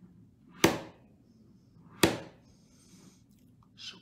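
Three sharp taps or knocks, roughly a second and a half apart, each dying away quickly; the last one is softer.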